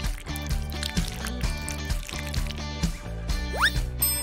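Background music with a steady beat. Near the end a short, quick rising whistle-like sweep.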